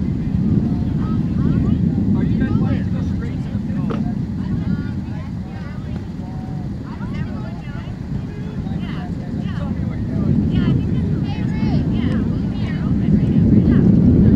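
Low, rumbling outdoor background noise that swells and eases, loudest near the end, with faint distant voices over it.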